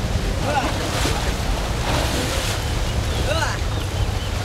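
Wind rumbling steadily on the microphone, with water splashing around elephants wading in a river and a few faint voices calling in the distance.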